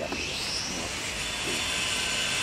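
A sudden, steady hiss starts and keeps going, with a brief higher rising note in it about half a second in.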